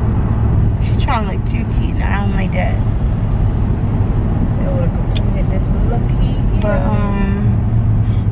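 Steady low road rumble of a moving car heard from inside the cabin, with short stretches of voice over it.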